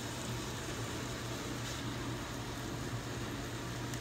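Steady, gentle sizzle of butter and a little water in a skillet of broccoli and onions cooking on low heat, over a steady low hum.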